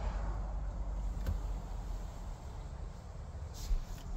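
Low, steady background rumble with faint hiss, fading slightly, and one light click about a second in.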